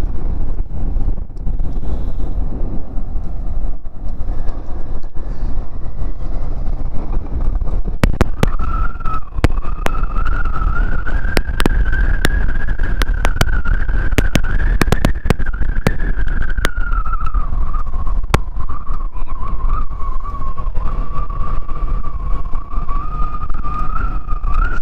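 Kawasaki Z400 parallel-twin motorcycle cruising at road speed, heard as a heavy wind-buffeted rumble on the mic. From about a third of the way in, a high thin whine joins it, rises gently, falls back and then holds steady, with scattered sharp clicks.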